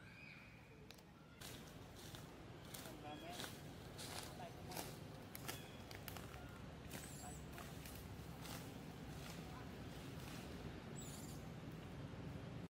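Dry leaf litter crackling and rustling in many short snaps as macaques move and forage over it, with a few faint short squeaks, over a low steady background hum.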